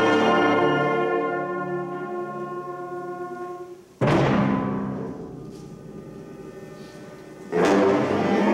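Wind band with brass and percussion playing: a held chord fades away over about four seconds, then a sudden loud accented chord with a percussion hit rings and dies away, and a second such hit comes near the end.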